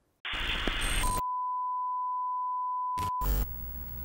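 Edited-in TV 'technical difficulties' sound effect: a short burst of static, then a single steady test-tone beep held for about two seconds that cuts off abruptly, followed by a brief low thump.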